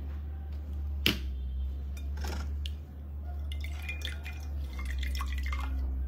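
Water dripping and splashing into a bowl as a wet facial sponge is dipped and squeezed out by hand, with one sharp click about a second in, over a steady low hum.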